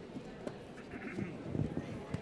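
Congregation talking as people greet one another, several voices at once.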